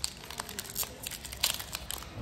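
Foil Yu-Gi-Oh booster pack wrapper crinkling and tearing as it is pulled open by hand, a run of small irregular crackles.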